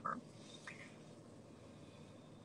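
Low, steady background hiss with one faint, brief sound about two-thirds of a second in; the tail of a woman's word ends right at the start.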